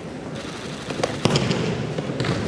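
An aikido partner's breakfall onto tatami mats as she is thrown: a quick cluster of slaps and thuds about a second in, the loudest just past the middle, ringing slightly in a large hall.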